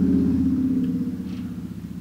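A woman humming a low closed-mouth "mmm", one steady note that slowly fades away.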